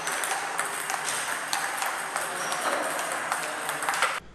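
Table tennis rally: the ball clicks in quick, irregular succession off paddles and the table, over a steady room hiss.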